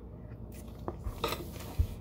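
Quiet handling of a plastic tub of shredded parmesan: a faint click, a short rustle, and a soft thump near the end as the tub is set down on the table.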